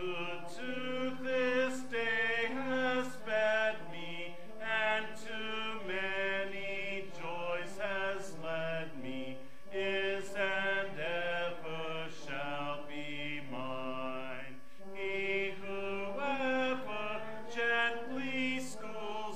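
Church congregation singing a slow hymn in unison, note by note, with short breaks between lines about every five seconds.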